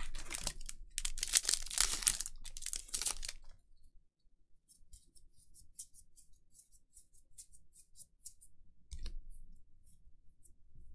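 A foil Magic: The Gathering draft booster wrapper is torn open with a crinkling rip during the first few seconds. Light ticks follow as the cards are slid one by one through the hand.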